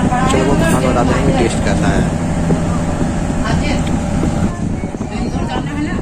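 Indistinct voices talking, mostly in the first couple of seconds, over a steady low hum.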